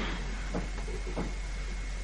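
Steady low hum and hiss of an old video recording, with two faint short clicks about half a second and just over a second in.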